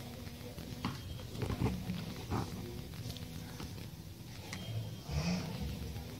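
A baby's brief grunting vocal sounds and soft bumps, loudest near the end, over a steady low hum.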